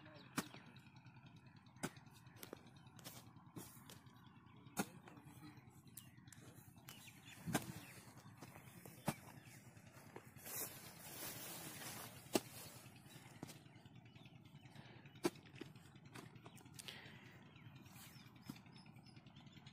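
Faint strikes of a hoe blade chopping into soil, single sharp hits every second or few, with a brief scraping of earth partway through, over a low steady background.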